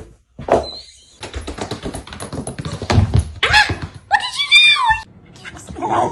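Pets play-fighting: a run of soft thumps and scuffles, then a short, wavering high-pitched call that falls in pitch about four seconds in.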